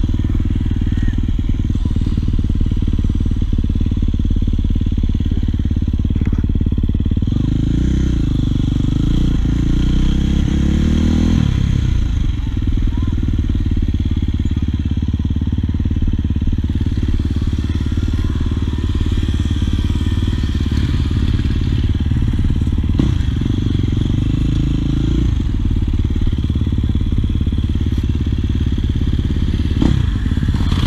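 Husqvarna FC450 dirt bike engine running while riding, the throttle opened and closed in a run of revs about 8 to 12 seconds in and again briefly around 24 seconds.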